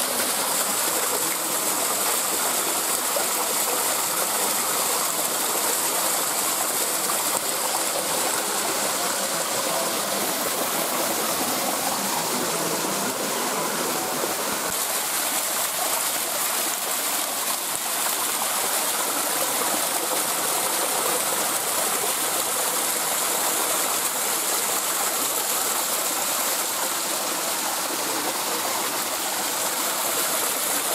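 A small stream cascading over rocks in thin waterfalls, a steady rushing splash heard close up.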